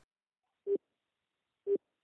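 Two short telephone line beeps about a second apart, each a single steady low tone.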